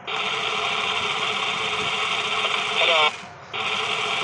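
Battery-powered talking parrot toy running, with a loud steady whirring hiss as its wings flap. Near the end it plays back a high-pitched 'Hello?', then the whir cuts out for a moment.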